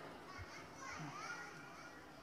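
Faint background voices of people, children's among them, with a soft low thump about half a second in, while the reciter is silent.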